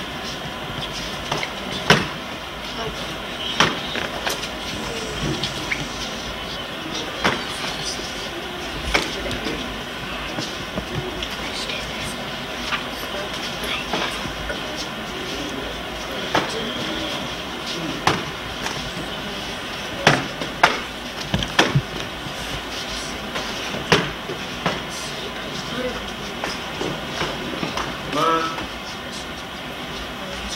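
Karate sparring: scattered sharp slaps and thuds of punches and kicks landing and feet striking the floor, clustered in a quick run about two-thirds of the way through, over a steady hiss. A brief voice near the end.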